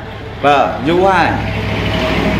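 A Buddhist monk preaching in Khmer into a handheld microphone, a short phrase about half a second in, followed by a steady low hum and hiss in the second half.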